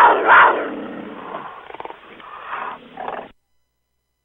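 A big cat's roar, loud at first with two peaks in the first half second, then trailing off into a rough growl that stops about three seconds in.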